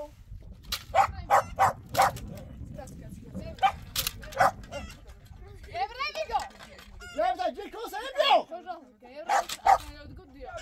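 A dog barking in short, sharp barks: about four in quick succession a second in, three more around four seconds, and two near the end.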